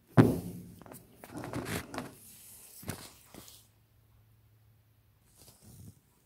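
A brief laugh, then a few soft thunks and rustles of handling over the first three and a half seconds as a stone and phone are moved about on a wooden table.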